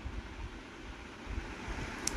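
Quiet, steady background noise: a faint hiss with a low, uneven rumble, room tone with no distinct event.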